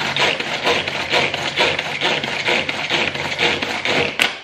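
Manual food chopper cutting up an onion and a garlic clove: a fast, even run of rasping strokes, several a second.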